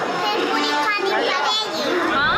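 A small girl's high-pitched voice, speaking and vocalising with rising and falling pitch.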